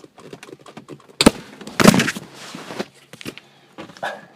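A BMW manual shift knob comes off its lever with a sharp knock about a second in. About half a second later comes a louder thump as the knob strikes the iPad doing the recording, followed by rustling handling noise.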